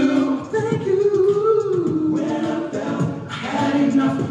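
Male a cappella group singing an R&B song in close harmony, with a lead voice holding a wavering note over the backing voices and vocal percussion.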